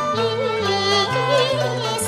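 Cantonese opera music: one melody line wavering with heavy vibrato, over low bass notes that change every half second or so.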